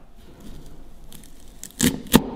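Metal apple corer pushed down into a raw cauliflower floret: a low crunching crackle as the florets break apart, with one loud sharp snap near the end.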